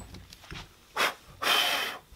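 Two puffs of breath blowing wood dust and shavings off the face of a guitar headstock: a short puff about a second in, then a longer, louder one.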